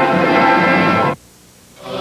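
Orchestral TV bumper music, with sustained brass and strings, that cuts off sharply about a second in. A brief quiet gap follows as the station switches to a commercial.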